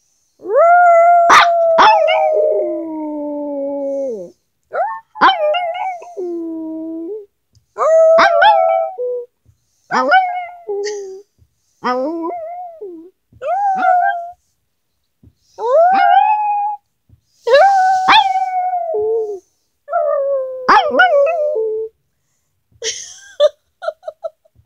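A small Pomeranian-type dog howling on cue: about nine drawn-out howls, the first and longest nearly four seconds, the rest one to two seconds each with short breaks between.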